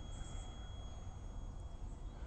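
Quiet background noise: a steady low rumble with two faint, steady high-pitched tones over it.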